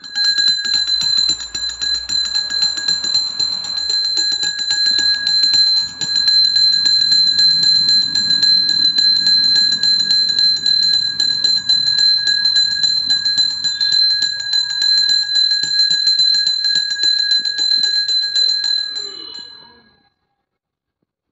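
Puja hand bell rung rapidly and without pause during the flame offering, a steady high ringing that fades out about a second before the end.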